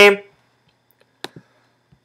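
A man's voice finishing a word, then near silence broken by two brief faint clicks a little over a second in.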